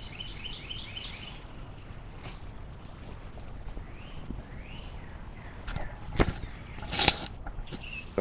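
Small birds chirping in short repeated notes over a low outdoor background hiss, with a few sharp clicks near the end.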